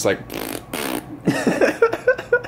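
A person blowing a mouth-made fart noise, two noisy bursts in the first second, imitating the newborn passing stool, followed near the end by short bursts of laughter.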